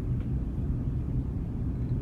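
Steady low background hum (room tone) with no distinct events.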